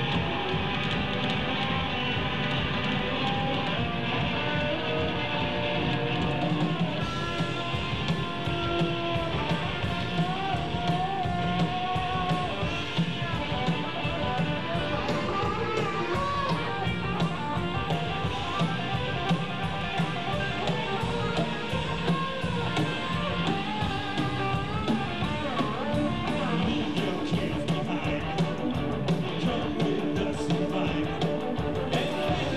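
A rock band playing live: electric guitars over bass and drum kit, with a wavering lead line coming in about eight seconds in.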